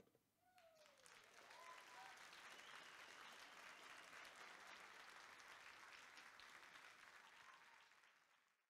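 Faint audience applause that starts about a second in, holds steady and fades out near the end.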